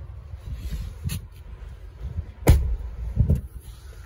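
Handling noise: a sharp knock about two and a half seconds in, the loudest sound, with softer knocks around one and three seconds in, over a low rumble.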